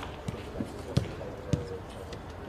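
A football being kicked: three dull thuds a little over half a second apart.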